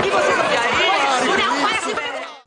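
Several voices talking at once in a short stretch of sitcom dialogue.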